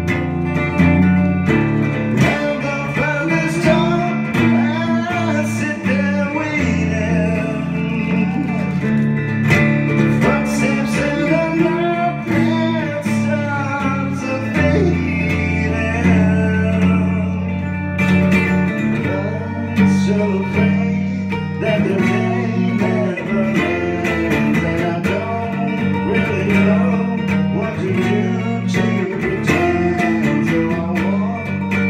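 A man singing live to his own cigar box guitar, with plucked and sustained low notes under the vocal line.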